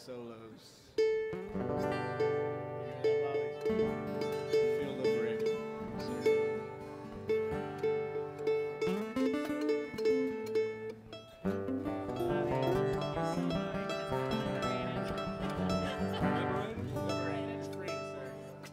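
Acoustic guitars and mandolin playing an instrumental passage together, starting about a second in, with a brief drop in level a little past the middle before the playing picks up again.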